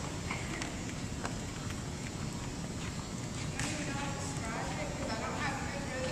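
Indistinct, echoing chatter of several people in a gymnasium, with a few scattered sharp knocks.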